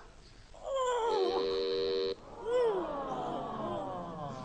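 A man's wordless cries of disgust: a wavering then held wail that cuts off abruptly, followed by a long falling moan that fades away.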